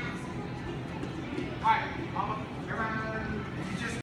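Indistinct voices and chatter in a large hall, with a few short, high-pitched raised calls. The loudest call comes a little before the middle, and a longer one follows near three seconds.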